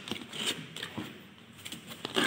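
Cardboard box flaps being pulled open by hand: a few light scrapes and rustles of cardboard with short clicks, quieter around the middle.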